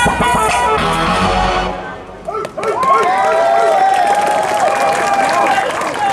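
An amplified dance-pop track over the stage speakers ends about two seconds in, and an audience answers with high-pitched cheering and screaming.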